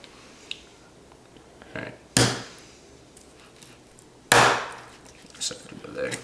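Kitchen knife chopping through rabbit leg bone onto a plastic cutting board: two hard chops about two seconds apart, with a few lighter knocks of the blade and meat on the board between them.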